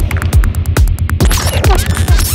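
Psytrance track with a steady four-on-the-floor kick drum, about two and a half beats a second, and a rolling bassline filling the gaps between the kicks. Crisp hi-hats run over the top, and gliding synth sounds come in during the second half.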